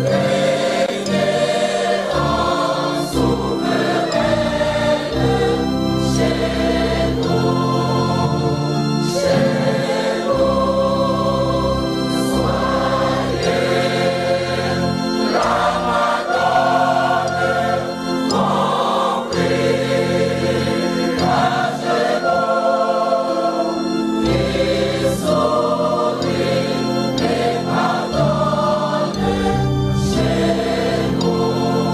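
A choir singing a sacred song with organ accompaniment: voices moving from note to note over held low chords.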